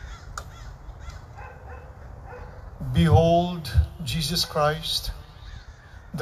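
A man's voice speaking from about three seconds in, after a few seconds of faint background sound.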